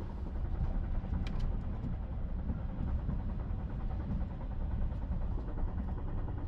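Steady low rumble inside the carriage of a TGV Euroduplex high-speed train running along the line, with a couple of faint ticks about a second in.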